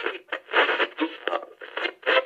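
A radio being tuned across stations: short, tinny snatches of broadcast voices and music cut in and out in quick succession.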